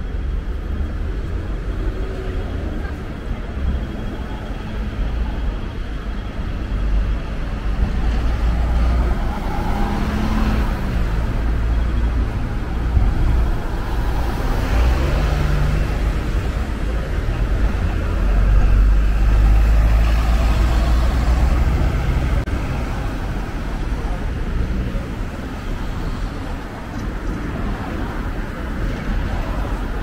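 City road traffic with vehicles passing close by, including a double-decker bus, giving a steady low engine rumble that swells to its loudest a little past the middle.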